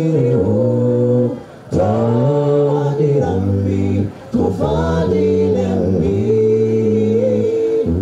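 Male vocal group singing a cappella in close harmony, holding long chords, with two brief breaks between phrases, about a second and a half in and again about four seconds in.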